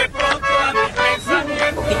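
Vallenato music: an accordion playing over a steady percussion beat.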